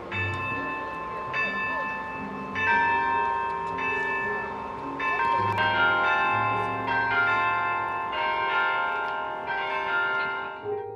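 University tower bells ringing, a new stroke about every second or so, each note ringing on over the ones before; rung in support of the hospital's care teams.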